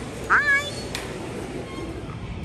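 A single short, high-pitched cry with a wavering pitch, about a third of a second in, over steady background noise.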